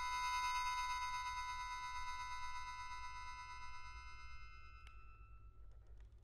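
Accordion holding a high chord of several steady notes that swells briefly and then dies away, its notes dropping out one by one over about five seconds. A light click sounds near the end.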